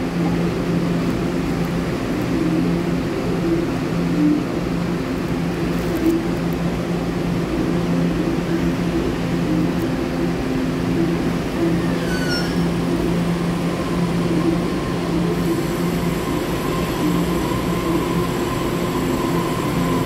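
TEMU1000 Taroko Express tilting electric train at an underground platform, its equipment giving a steady low hum. A brief falling squeal comes past the middle. Soon after, a steady electrical whine with higher thin tones sets in as the train pulls out.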